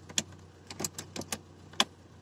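A run of sharp plastic clicks, about eight in two seconds, from dashboard light switches being pressed in a Zastava Yugo. The car's engine idles faintly underneath.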